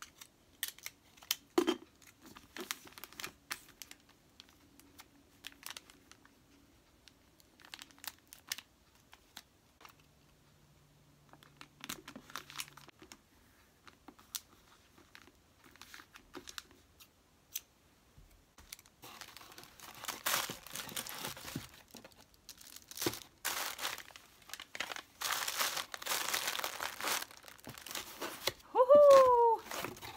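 Gift wrapping paper being handled: scattered light crinkles and rustles, then several seconds of dense crinkling and tearing of paper. Near the end, one short, loud squeak falls in pitch.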